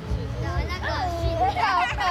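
Children's voices in the audience, high-pitched chatter and calling out, over a steady low rumble.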